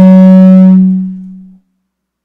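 Microphone feedback through the PA system: a loud, steady low tone with a stack of overtones, fading away about a second and a half in.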